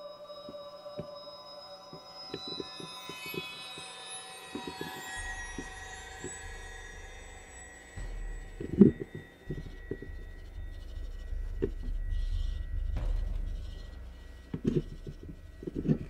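A NEPTONION magnetic algae scraper sliding on aquarium glass, with scattered knocks and a low rubbing rumble from about five seconds in. The loudest knock, a sharp thump, comes about nine seconds in. Soft background music plays underneath.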